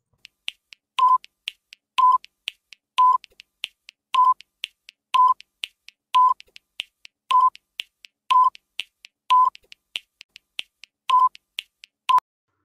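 Quiz countdown timer sound effect: quick clock-like ticking with a short beep about once a second, roughly ten beeps in all.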